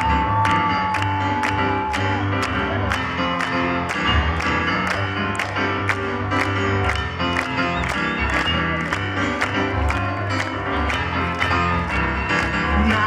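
Live band music with piano: an instrumental passage without singing, with a steady beat of about two to three strokes a second.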